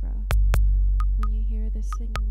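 Modular synthesizer improvisation: a deep, steady low drone under irregular sharp clicks, several followed by a short high ping, with a steady pitched tone entering about halfway through.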